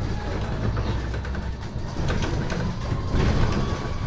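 Inside a MAN Lion's City Hybrid city bus under way: a low rumble from the drivetrain and road, with short rattles and knocks from the cabin fittings. Over it runs a faint electric-drive whine that climbs slowly in pitch.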